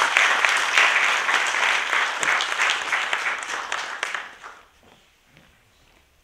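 Audience applauding a guest called to the stage, dying away about four and a half seconds in.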